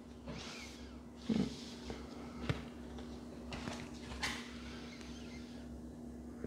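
Tarot cards handled and laid down on a cloth table cover: a few faint slides and rustles with one soft click about midway, over a low steady hum.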